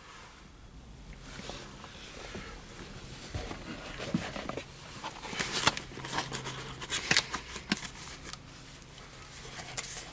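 Cardboard sandwich box being handled and opened, with rustling and a run of short sharp clicks and taps that grow busier in the second half.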